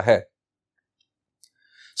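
A man's voice finishing a word, then near silence, broken only by a faint click about one and a half seconds in and a soft breath just before he speaks again.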